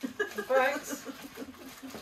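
People talking and laughing.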